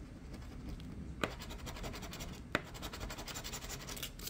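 A coin scraping the coating off a scratch-off lottery ticket in rapid back-and-forth strokes, starting about a second in. Two sharper clicks stand out among the strokes.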